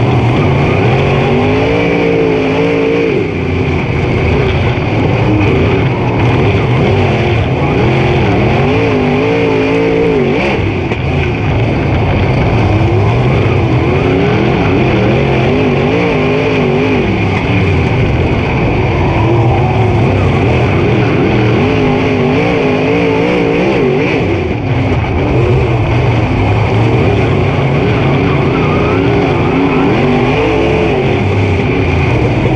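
Super Late Model dirt race car's V8 engine heard from inside the cockpit at racing speed. The engine pitch rises and falls again and again as the driver gets on and off the throttle, over a steady rush of noise.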